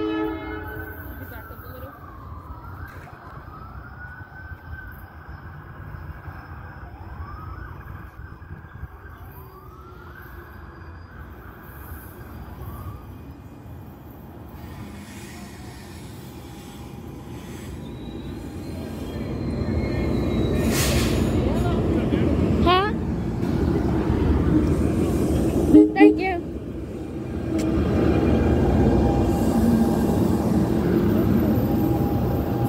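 NJ Transit electric multiple-unit commuter train approaching and passing close along the platform, its rumble swelling over the second half. There are two short loud blasts, likely the horn, a little before the end. Faint rising and falling wails of a distant siren are heard in the first ten seconds.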